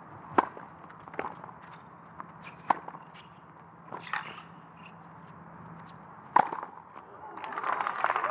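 Tennis racket strikes on the ball in a rally on a hard court, beginning with a serve: about five sharp hits, one every one to one and a half seconds, the last one, about six and a half seconds in, the loudest.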